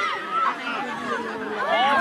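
Several voices calling out and chattering at once, high-pitched and overlapping, with no single voice standing out.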